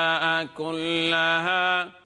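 A man reciting the Quran in Arabic in a slow, melodic chant, holding long steady notes. The voice breaks off briefly about half a second in, then holds another long note that stops just before the end.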